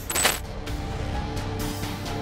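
A brief bright, ringing sound effect just after the start, then steady background music with held notes for the end screen.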